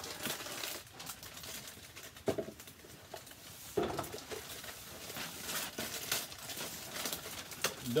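Plastic inner packet of graham cracker crumbs being opened and handled, a run of crackly rustles and crinkles, with two brief low vocal sounds about two and four seconds in.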